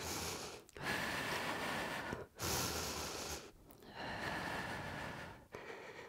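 A woman breathing audibly in and out, about four long breaths, each a second or more, with short pauses between them.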